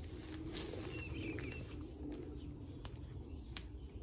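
Garden ambience: boots walking through long grass, with a short bird call about a second in and a few faint clicks.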